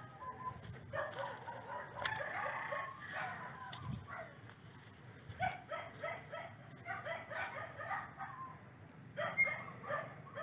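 Chickens calling in the distance: runs of short repeated clucks, with a rooster crowing.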